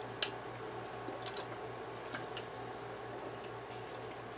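A person sipping a drink: faint sips and swallows with a few soft clicks, over a low steady hum.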